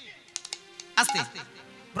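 Steady, held low musical notes sound under a pause in the talk. A few sharp clicks come early on, and a short voice sound comes about a second in.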